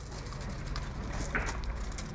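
Quiet, scattered patter and crunch of two Border Collies' paws trotting over gravel and paving stones.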